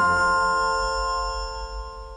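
The closing chord of a quiz show's round-title jingle: several ringing tones held over a low bass, slowly fading away.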